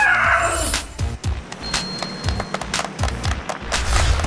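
Trailer music with a quick beat of drum hits; a woman's high scream fades out in the first half-second.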